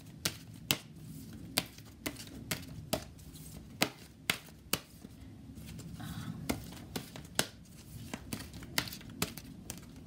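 A deck of oracle cards being shuffled by hand: the cards slap and flick against each other in irregular sharp clicks, about two a second, over a faint steady low hum.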